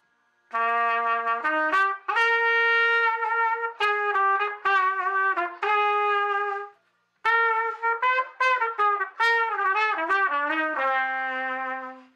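Trumpet played open, without a mute, at full volume: two melodic phrases of held and moving notes, with a short breath about seven seconds in. The first phrase climbs from a low note, and the second ends on a long low note.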